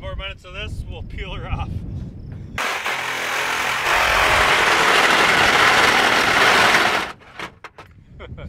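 DeWALT reciprocating saw cutting through a Chevy Equinox's sheet-metal roof: a loud, harsh rasp starts about two and a half seconds in and stops abruptly about a second before the end, as the blade breaks through.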